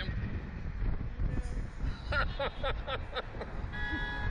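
Wind buffeting the microphone in a steady low rumble, with a person's short laugh about halfway through and a brief horn toot near the end.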